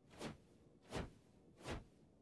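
Near silence, broken by three faint, brief sounds about three-quarters of a second apart.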